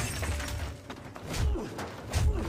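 Film fight-scene soundtrack: several sharp crashes and breaking sounds, with glass shattering, over a low rumble.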